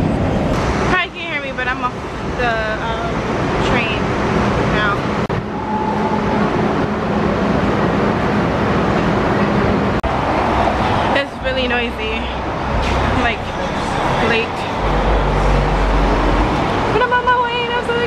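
Steady city traffic noise with people's voices heard over it, and a deep rumble for about two seconds near the end.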